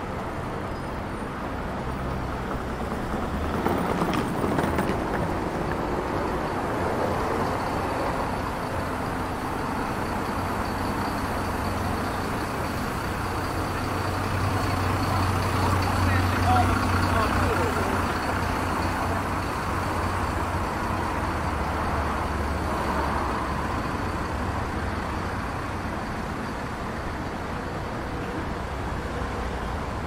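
City road traffic: a queue of cars and a bus running along a street, with a low engine rumble that swells to its loudest about halfway through.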